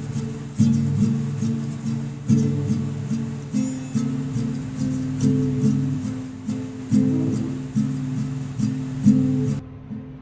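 Acoustic guitar played solo, a picked chord pattern with a steady rhythm of attacks and no voice. Just before the end the sound turns duller and quieter.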